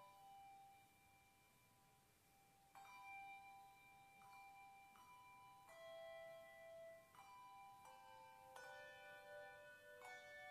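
Handbell choir ringing a slow piece softly: single bells and small chords struck about every second, each note ringing on under the next, after a thinner stretch of fading tones near the start.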